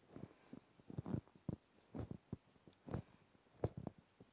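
Marker pen writing on a whiteboard: a run of short, faint squeaks and scrapes, one small group of strokes for each digit as a column of numbers is written.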